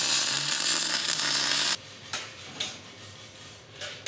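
MIG welder arc crackling steadily as a bead is laid on a steel gate frame, cutting off suddenly about two seconds in. After that, only a few faint clicks and taps.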